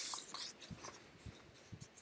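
Faint rustling and small clicks close to the microphone: a short rustle at the start, then scattered light clicks and soft taps.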